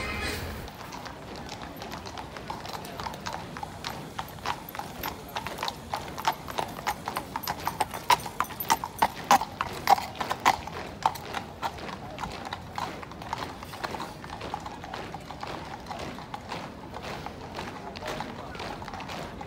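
Horse hooves clip-clopping on a tarmac road, an irregular run of sharp strikes that grows loudest about halfway through and then fades.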